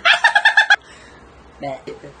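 A man's loud, high-pitched burst of laughter, a quick run of short "ha" pulses lasting under a second, followed near the end by a brief vocal sound.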